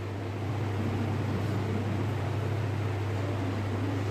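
Steady low background hum with an even hiss over it, like a running fan or appliance, with no distinct knocks or clicks.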